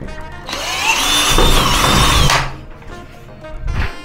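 Cordless drill on an 18V battery running under load into the door frame at the hinge for about two seconds, its whine rising as it spins up and then holding steady, with a brief second run near the end.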